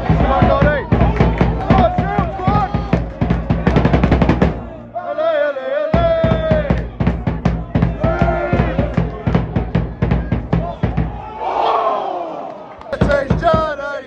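Singing voices over a steady drum beat and low bass. The beat drops out for about a second some five seconds in, then resumes.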